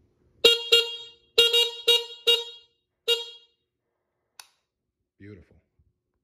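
Small electric horn on a Honda XR650R dual-sport conversion giving about six short, quick beeps in the first three seconds, followed by a single click. The horn sounding is the sign the new wiring works as intended: with the blinkers not yet grounded, only the horn should get power.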